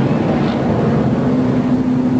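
NASCAR stock car's V8 engine running on track, a steady drone heard through the TV broadcast's track audio.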